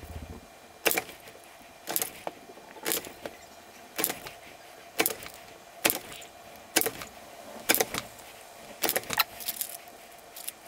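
Hand-lever bench shear cutting brass strip into small squares: a series of about ten sharp metallic snips, roughly one a second, some with a quick second click.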